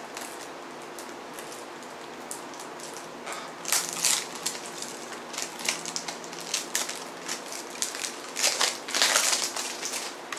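CD packaging being handled: plastic and paper crinkling and crackling in scattered clusters, starting a few seconds in and loudest near the end.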